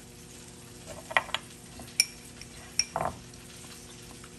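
A few light clinks and taps of metal spoons against dishes on a kitchen counter, two of them ringing briefly, over a faint steady hum.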